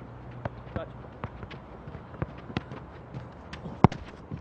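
A string of light thuds from running feet and soccer ball touches, about two to three a second, with one much louder, sharper strike of the ball near the end.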